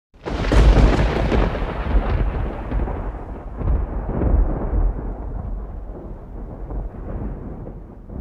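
Thunder sound effect: a sudden loud crash that rolls on in several deep rumbling swells and slowly dies away.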